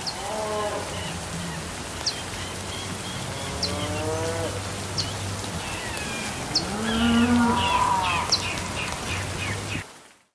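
Title-sequence soundtrack: a low steady drone with slow, arching gliding tones and a sharp high tick every second and a half or so, cutting off suddenly near the end.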